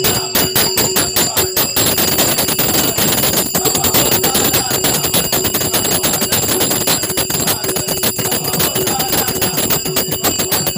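Small brass hand cymbals (taal) struck rapidly and continuously with a drum, keeping a fast bhajan rhythm, the cymbals' ringing held steady over the beats.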